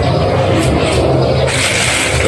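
A steady low motor hum runs throughout. About one and a half seconds in, a soft hiss joins it as fine powdered ceramic paint additive is poured from a quart container into a paint bucket.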